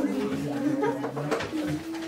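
A student's voice holding one low, steady note, like a long drawn-out "mmm", with other students talking over it in a classroom.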